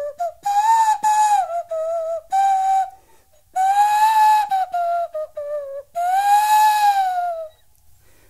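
A small drinking glass blown across its rim like an end-blown rim flute, giving a breathy whistling tone. It plays a short run of notes that slide up and down, in three phrases with brief breaks between them.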